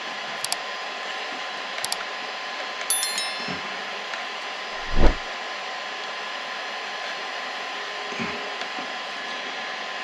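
Steady whirring hiss of the Bambu Lab A1 Mini's fans running with a faint steady tone, while filament is hand-fed into its toolhead. A few light clicks come in the first three seconds, and a dull thump comes halfway through.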